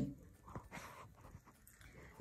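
A faint pause in a woman's speech: a short intake of breath about a second in, over quiet room tone.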